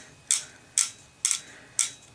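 Takedown screw of a Beretta U22 Neos .22 pistol being tightened down by hand, clicking about twice a second, four clicks in all.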